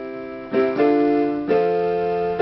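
Electronic keyboard playing held chords on a piano voice, with new chords struck about half a second in and again at about a second and a half.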